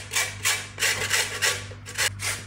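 A lemon rubbed over the fine holes of a stainless steel box grater, zesting the peel: a quick, even run of short scraping strokes, about four to five a second.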